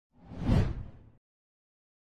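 A single whoosh sound effect for an animated title card, swelling to a peak and fading out within about a second.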